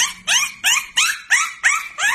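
Puppy yipping in a rapid series of short yelps, each rising in pitch, about three a second.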